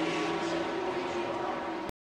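Porsche 911 race cars' flat-six engines running at a held, steady pitch, over a wide noise haze. The sound cuts off suddenly just before the end.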